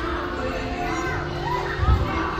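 Children's voices and chatter echoing in a large indoor hall, over background music, with a low thud near the end.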